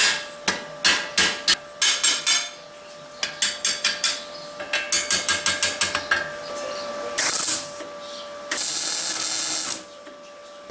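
Hammer blows on a steel disc being seated inside a steel pulley rim: a run of sharp metallic strikes, a short pause, then a faster run, with a steady ringing note under them. Near the end come two bursts of welder arc noise, a short one and a longer one of about a second, as the disc is tacked in place.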